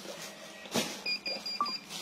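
About four quick, high-pitched electronic beeps in the second half. They come just after a single sharp crackle, like a plastic-wrapped bundle being handled.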